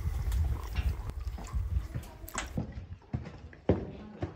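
Phone microphone handling and rubbing noise, with a low rumble, as someone clambers through a rocky cave passage. Two sharp knocks, the second about three and a half seconds in.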